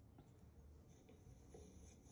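Faint pencil scratching on sketchbook paper while drawing, over a low steady background hum.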